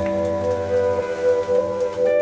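Live rock band: an electric guitar holds a sustained, ringing chord, and one note wavers in pitch in the middle.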